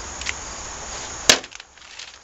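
Light handling of a plastic parts bag, then a single sharp click about a second and a half in, from steel scissors being set down on the metal workbench.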